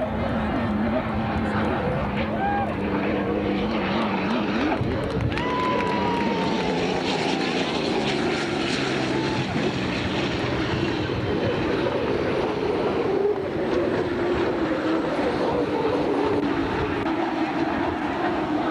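Racing hydroplanes running past at full speed: a loud, steady engine drone carried across the water, holding on with little change.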